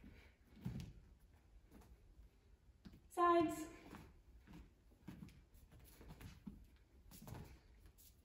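Soft steps and foot brushes of a dancer in ballet shoes on a studio floor, faint and irregular, with one short steady-pitched vocal sound about three seconds in.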